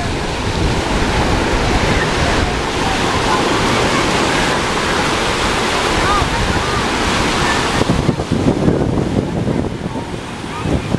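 Ocean surf breaking and washing in on a beach. It swells a little after about two seconds and eases near the end.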